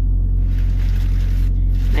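Steady low diesel drone heard inside the cab of a Freightliner semi-truck sitting at idle, an even rumble with no change in pitch or level.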